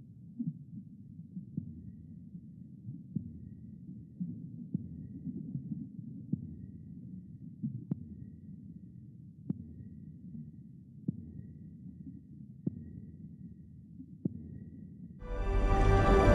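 Film sound design of deep water: a low rumble with a soft, regular pulse about every second and a half, and faint high tones. Loud music enters about fifteen seconds in.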